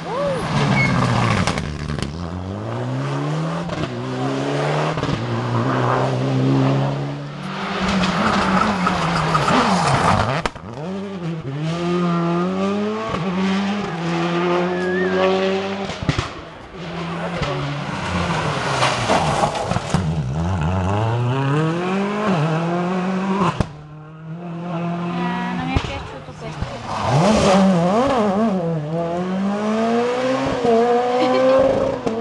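Rally car engines revving hard as cars come through a hairpin. The pitch climbs in steps with each upshift, drops back and climbs again several times.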